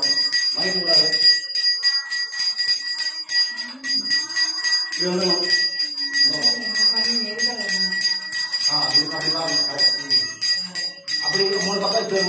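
Small handheld brass puja bell rung over and over in a steady ringing during aarti, with people's voices underneath.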